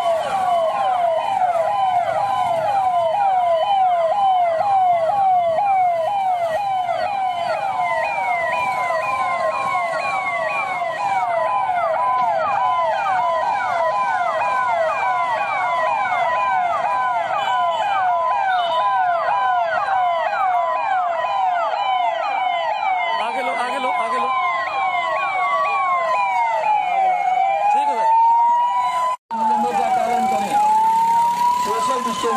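Police sirens sounding together: one in a fast yelp of about three rapid pitch sweeps a second, another in a slower rising and falling wail. The sound cuts out briefly near the end, then the wail carries on.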